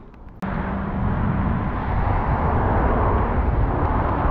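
Mountain bike riding downhill: wind rushing over a helmet camera's microphone with rumbling tyre noise, starting suddenly about half a second in and running on steady and loud.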